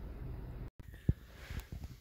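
Low, steady background noise in a car cabin, broken by a brief total dropout a little under a second in, with a faint click soon after.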